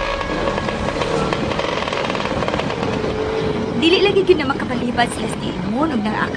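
A small motorcycle engine running steadily as a radio-drama sound effect, with the last of a musical bridge fading under it. From about four seconds in, short voice sounds come over the engine.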